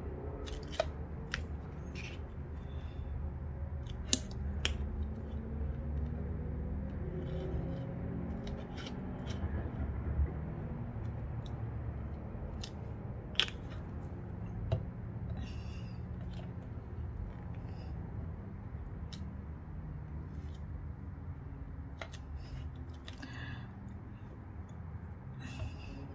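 Scattered small clicks and taps from hands handling a cardboard envelope, lace trim and a glue bottle on a cutting mat, over a faint steady low hum.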